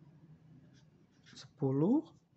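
Felt-tip marker scratching on paper in a few short strokes as a number is written. A voice speaks briefly near the end, louder than the writing.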